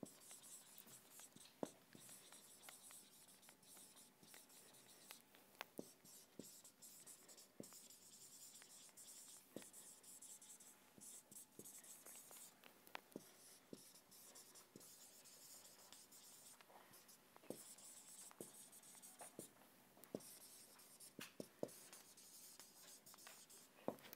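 Marker writing on a whiteboard, faint: scratchy strokes with scattered light ticks as the letters are formed.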